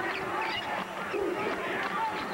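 Basketball shoes squeaking on a hardwood court: a scatter of short, high chirps as players cut and stop, over steady arena crowd noise.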